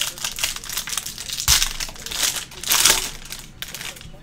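Foil wrapper of a Panini Impeccable basketball card pack being torn open and crinkled by hand, in an irregular run of crackles. The loudest bursts come about one and a half seconds in and again near three seconds.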